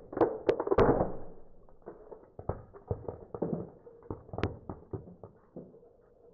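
A car tyre rolls onto a hard painted puppy figurine and crushes it. Three sharp cracks come in quick succession with a burst of crunching. After that come scattered small crackles and clicks as fragments break and grind under the tyre.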